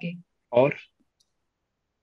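The end of a spoken word and one short spoken syllable, then dead silence from the call's audio gate, broken only by a couple of faint clicks.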